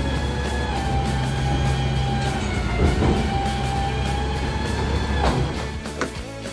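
Garbage truck working at a street container: its diesel engine and lifting gear run with a steady low rumble, and a pitched tone drops out midway and comes back. Background music plays over it.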